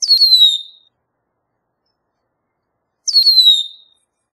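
Red-winged blackbird giving a short whistled call twice, about three seconds apart: each starts high with a sharp onset and slides down in pitch, lasting under a second.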